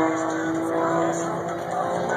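Aerobatic propeller airplane's engine droning steadily as the plane recovers from a spin, its pitch stepping down about one and a half seconds in.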